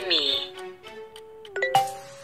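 A language-learning app's short chime about 1.7 s in, marking a correct answer, over a steady K-pop instrumental backing track. It comes after a brief falling-pitched sound right at the start.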